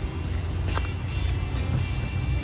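Wind rumbling on the microphone, with two faint handling clicks a little under a second in, over quiet background music.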